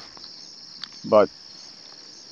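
Crickets chirping in a steady, high-pitched chorus.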